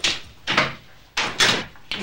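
A room door being opened: four sharp clunks and clatters of the latch and door within two seconds.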